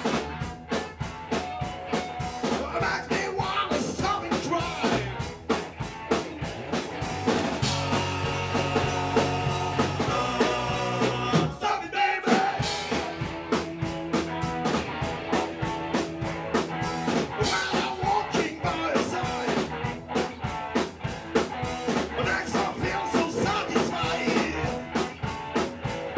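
Live rock band playing with drum kit, electric bass and electric guitars, keeping a steady beat.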